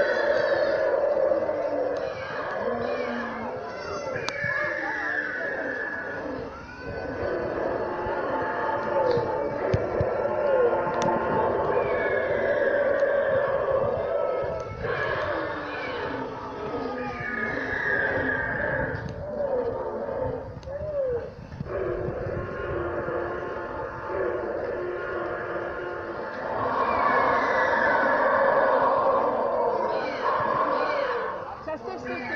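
Recorded dinosaur sound effects from the park's animatronic figures: repeated roars and wavering, whinny-like calls, one after another.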